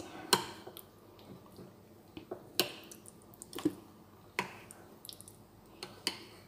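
Metal spoon stirring yogurt with granola and fruit in a bowl: soft squelches and a handful of light clicks of the spoon against the bowl, the sharpest about a third of a second in.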